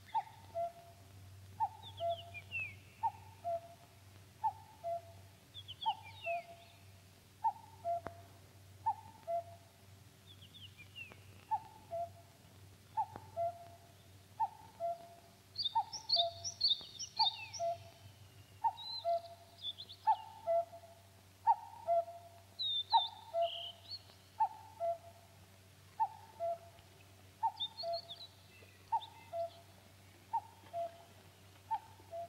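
A common cuckoo repeating its two-note falling "cuck-oo" call about once a second, with higher chirps from small songbirds now and then.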